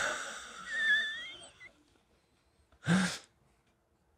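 A man's wheezy laugh: a hissing breath with a thin squeaky whistle running through it, lasting about a second and a half. A short breathy vocal burst follows about three seconds in.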